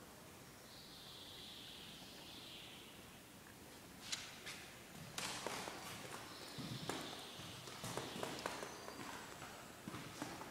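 Footsteps on a hard floor with rustling and knocks from handling the camera, irregular, starting about four seconds in after a few seconds of faint hiss.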